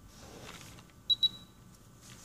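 Two short, high-pitched electronic beeps in quick succession about a second in, from a TENS unit's treatment timer, signalling that the timer has run out. A soft rustle comes before them.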